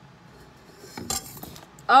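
Light clicking and rustling of a small plastic eye pencil being handled, about a second in and lasting under a second.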